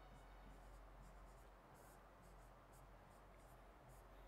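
Near silence with faint, light scratches of a pen writing numbers on a board.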